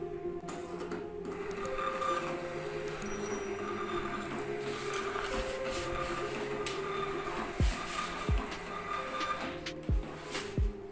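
Gprinter GP-1224T thermal barcode label printer printing in direct thermal mode and feeding out a run of shipping labels: a steady mechanical whir from about a second in, with a few dull thumps near the end. Background music plays throughout.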